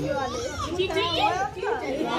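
Several people talking over one another, children's voices among them.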